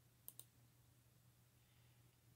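Near silence broken by two quick computer-mouse clicks about a third of a second in, over a faint steady low hum.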